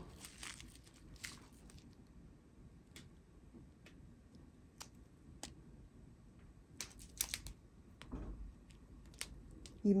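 Clear plastic bags of diamond-painting drills crinkling and rustling now and then as they are handled, faint, with scattered light clicks, most of them around seven seconds in. Wind can be heard faintly in the background.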